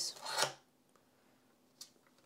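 Film cutter's blade slicing through a strip of 120 roll-film negatives: one short scraping rasp about half a second long, then a faint click near the end.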